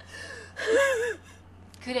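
A woman crying: a gasping intake of breath, then a short wavering sob.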